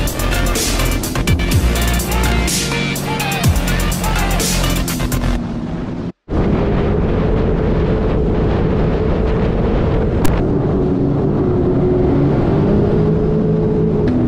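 Electronic dance music with a heavy beat, which cuts off abruptly about six seconds in. After a brief gap, a jet ski engine runs steadily at speed, with wind and water noise.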